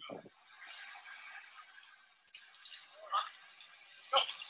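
Faint, indistinct soundtrack of a short video played back through a video-call screen share, with muffled voices and a few short swells of noise.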